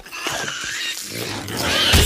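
Sound effects for an animated logo sting: a run of animal-like squealing calls that waver and bend in pitch, ending in a loud, sudden crash near the end.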